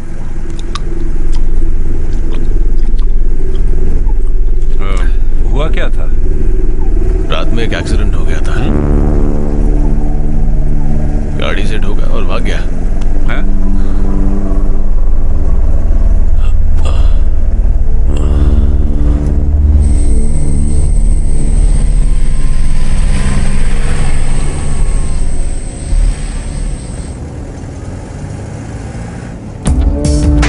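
Film soundtrack: the loud, steady low rumble of an open-top jeep's engine under background music with long held notes, which comes in about nine seconds in.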